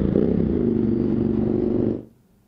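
A motor vehicle engine running steadily close by, its pitch dipping and rising again briefly a quarter second in. The sound cuts off suddenly at the end.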